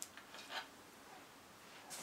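Quiet room tone with a faint, brief handling sound about half a second in: hands working the grub screws and adapter on a refractor's metal focuser.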